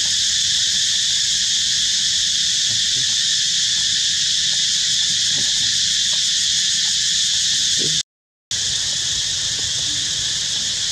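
Steady, high-pitched chorus of insects, cutting out completely for about half a second around eight seconds in.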